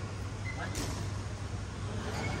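A single sharp crack about three-quarters of a second in: a badminton racket striking the shuttlecock, heard over the steady low hum of a large sports hall.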